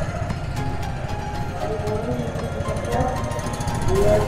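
Motorcycle engine running at low speed in stop-and-go traffic: a steady low rumble with a rapid even pulse. Faint music runs over it.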